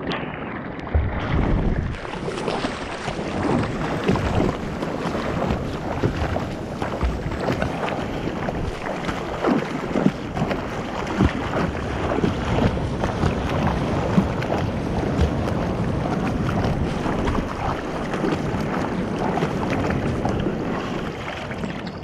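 Whitewater rushing and splashing against a surfboard right beside the board-mounted camera, with wind buffeting the microphone. A steady rush broken by many small slaps of water.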